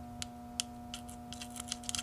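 Tiny sparks snapping between a manual battery charger's clamp and the terminal of a deeply discharged wheelchair battery: faint, irregular clicks over a steady low hum. The sparks are the sign that the dead battery has begun to take charge and will probably recover.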